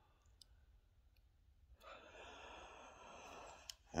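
A faint sigh: a woman's long breath out starting about two seconds in and lasting nearly two seconds, followed by a brief click just before she speaks again.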